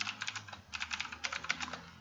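Computer keyboard typing: a fast run of keystrokes with a brief pause about half a second in.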